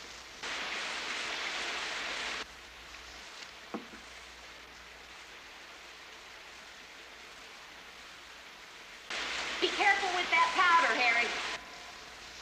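Granular black powder poured from a container onto a sheet of paper, a sandy hiss lasting about two seconds, followed a little later by a single click. A person's voice is heard near the end.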